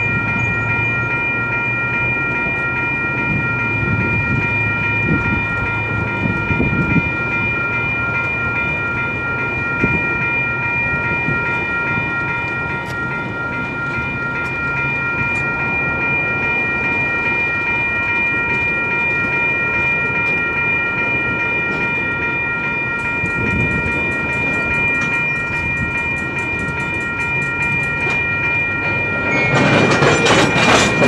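Railroad crossing bell ringing steadily as a train of tank cars rolls slowly past, with a low rumble and scattered clicks of the wheels over the rail joints. A louder, noisier burst comes in the last second.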